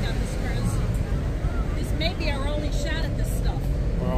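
Faint voices of people talking in the background over a steady low rumble.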